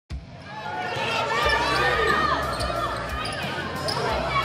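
Basketball game sound on a hardwood court: sneakers squeaking in short up-and-down chirps, and a ball bouncing with low thuds about once a second.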